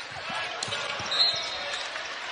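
A basketball bouncing on a hardwood court during live play, with a short high squeak of shoes about a second in, over steady arena crowd noise.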